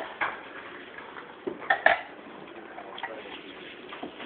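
Clinks of a serving utensil against tableware as food is served at a table: a few separate clinks, the loudest pair about two seconds in.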